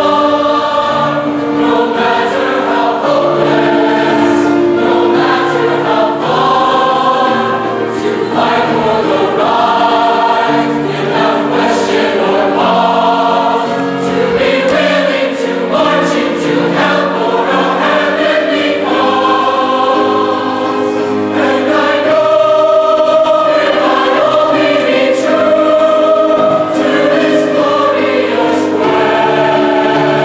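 A large high-school choir singing in harmony, with long held notes and chords that change every second or two.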